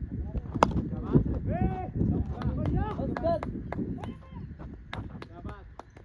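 A single sharp crack about half a second in, a cricket bat striking the ball, followed by several men's voices shouting and calling across the field, with wind buffeting the microphone throughout.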